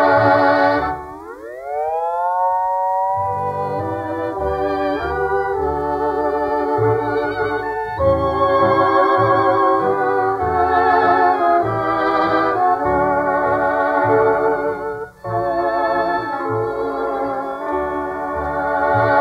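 Instrumental break of a Hawaiian-style dance orchestra record. A sustained melody line with a wide vibrato swoops upward in pitch about a second in and plays on over steady bass notes.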